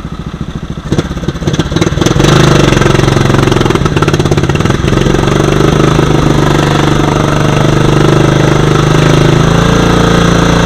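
Riding lawn mower's small gas engine running with slow, even pulses, then revving up about two seconds in and running hard and steady under load as the mower churns through muddy water, with splashing from the wheels.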